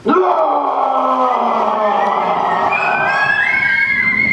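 A group of stage actors screaming together as a mob: several held, overlapping voices that start suddenly, with one rising higher near the end.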